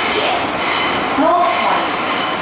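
Metro train running, heard from inside the car: a steady rumble and rush with a high, steady whine from the wheels and running gear. A short stretch of announcement voice comes in past the middle.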